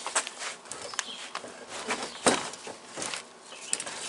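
A chair being shifted back into place on wooden deck boards: scattered knocks and scrapes, with one sharp knock a little past two seconds in.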